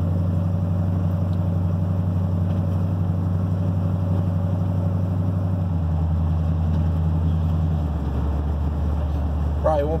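Dually pickup's engine and new exhaust, heard from inside the cab while cruising: a steady low growl through fiberglass-packed mufflers and leak-free headers. The note drops about six seconds in and again near eight seconds as the throttle eases.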